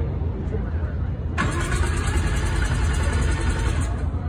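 Mazda RX-7 engine being cranked over by its starter on a cold start: a rapid, even, churning sound that begins about a second and a half in and stops just before the end without the engine catching.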